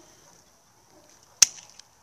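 One sharp snip as a pair of Russian-made hand pruning shears closes through a thin quince shoot, about a second and a half in.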